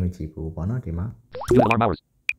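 A man talking, his voice rising in a swoop of pitch about one and a half seconds in.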